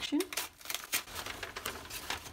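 Wrapping paper and tissue paper rustling and crinkling in irregular sharp crackles as a wrapped parcel is peeled open and unfolded by hand.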